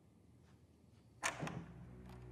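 A sudden whoosh-and-hit sound effect just over a second in, sweeping from high to low pitch, followed by a short second click; tense music begins to rise under it.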